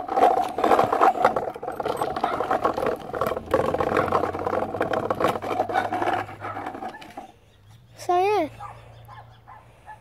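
Rattle and rolling noise of riding over a rough dirt path, with wind on the microphone, dying away about seven seconds in as the rider comes to a stop. A brief wavering vocal sound follows about a second later.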